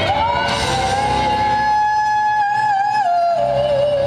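A female singer slides up into a long, high held note with vibrato over a live band, then steps down to a lower note near the end. The band's low end drops away briefly in the middle of the held note.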